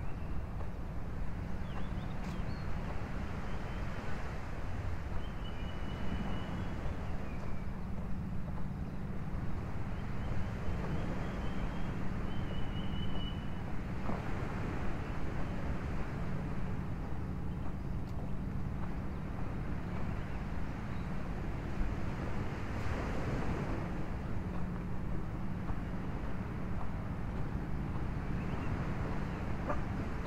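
Steady outdoor wind rumbling on the microphone, with a rushing haze of wind and surf behind it and a few faint high chirps.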